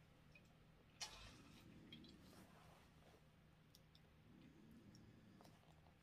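Near silence: quiet room tone with one faint click about a second in and a few softer ticks after it.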